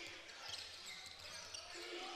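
Faint court sound of a college basketball game: a basketball bouncing on the hardwood floor amid low gym noise, with a short call from the court near the end.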